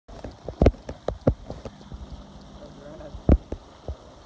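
Irregular sharp knocks and thumps close to the microphone, about a dozen in four seconds, loudest about two-thirds of a second in and again near the end.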